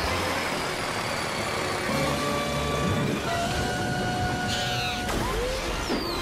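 Cartoon motorbike engine sound effect, a steady, rough, continuous engine noise as the little bike races along, with a few held notes over it. About five seconds in there is a short rising glide.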